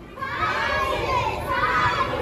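A group of children's voices talking and calling out at once, overlapping into a lively jumble.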